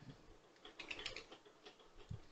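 Faint computer keyboard and mouse clicks, a quick cluster of light taps about a second in, from Blender shortcuts such as the S (scale) key and the middle mouse button.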